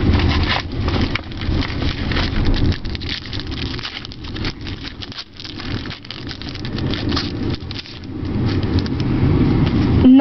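Foil booster-pack wrapper crinkling and tearing open by hand, with a plastic bag and trading cards rustling, over a low rumble. The rustle eases in the middle and builds again toward the end as the cards are handled.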